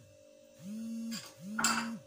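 Hand-held immersion blender run in two short bursts, its motor humming up in pitch, holding and dropping each time. A sharp metallic clink sounds near the end, louder than the motor.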